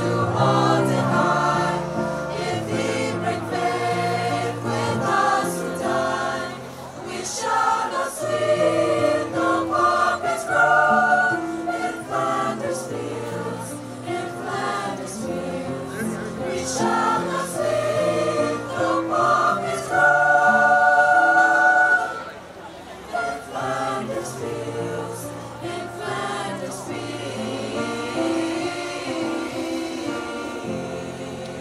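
Mixed-voice high-school choir singing in harmony, with sustained chords; a loud held chord near the two-thirds mark gives way to a quieter passage.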